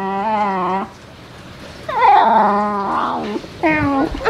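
A Shiba Inu giving a drawn-out, cat-like whining yowl, objecting to being handled: one long held call ending about a second in, a second wavering call, and a short falling one near the end.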